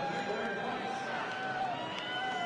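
Indistinct voices talking, with crowd noise in the background.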